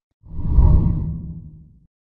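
A deep whoosh transition sound effect that swells up shortly after the start, peaks about half a second in and fades away over the next second or so.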